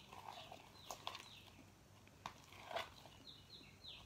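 Faint sticky clicks and pops of clear slime being stirred and pulled from a plastic cup with a stick. A bird's repeated downward-slurred note, about four a second, sounds in the background at the start and again near the end.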